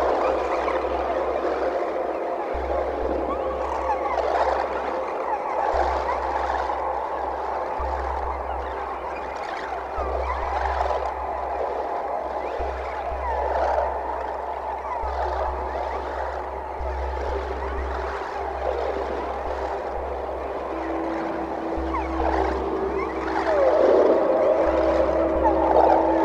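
Free-improvised experimental music for live electronics and guitar: layered drones criss-crossed by sliding pitch glides over a deep bass that switches on and off in blocks. Late on, a steady held tone enters and the texture swells louder.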